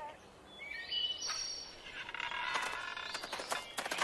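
Birds chirping and twittering as an outdoor sound effect, faint, starting about a second in and getting busier in the second half.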